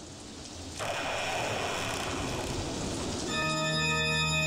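Opening theme music: a rain-like wash of noise that swells, steps up louder about a second in, and is joined near the end by sustained organ chords.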